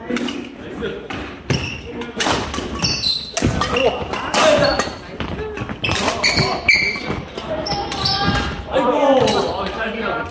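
Badminton doubles rally in a large hall: repeated sharp cracks of rackets hitting the shuttlecock and thuds of footsteps on a wooden gym floor, echoing, with players' voices calling out in between.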